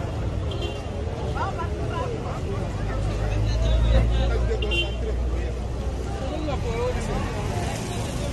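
Indistinct conversation of several people talking at once, with a low rumble swelling in the middle and loudest about halfway through.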